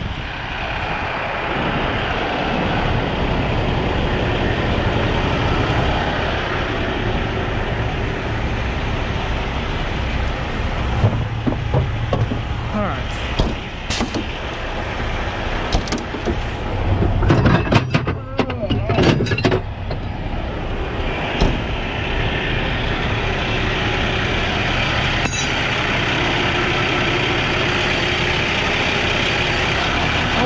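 Heavy diesel truck engines idling steadily. A few seconds of knocking and clattering come about two-thirds of the way through, then a single click.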